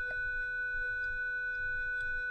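A steady electronic whine made of several pure tones held together at once, the highest of the main tones loudest, over a faint low background hum.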